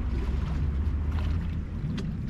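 A steady low rumble of wind on the microphone, with sparkling wine being poured from the bottle into a glass faintly beneath it.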